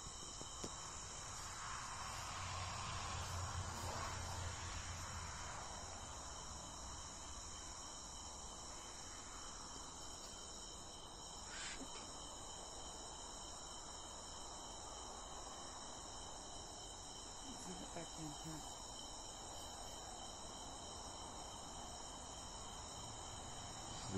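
A faint, steady chorus of crickets trilling at several high pitches at once. A brief low rumble comes in the first few seconds.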